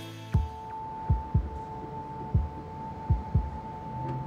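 Documentary soundtrack music: deep heartbeat-like double thumps, roughly every two seconds, under a steady high held tone.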